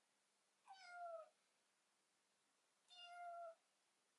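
A young tabby kitten meowing twice, about two seconds apart. The calls are short, high and fairly quiet; the first dips slightly in pitch and the second holds steady.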